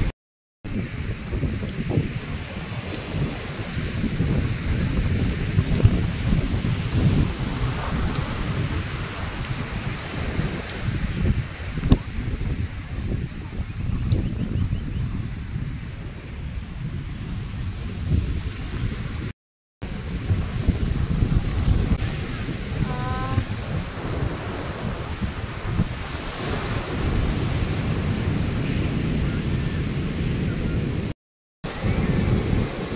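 Sea surf breaking and washing up a sandy beach, with gusting wind buffeting the microphone in a steady, fluctuating rumble. The sound cuts out briefly twice.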